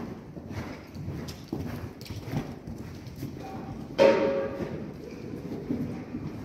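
A horse's hoofbeats cantering on the sand footing of an indoor riding arena. A sudden loud, ringing cry cuts in about four seconds in and fades over about a second.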